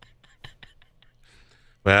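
A few faint, quick clicks of ice cubes knocking in a drinking glass as it is picked up, followed by a soft breath.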